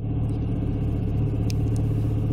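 BMW 335i's N54 twin-turbo straight-six engine running steadily with a low, even hum.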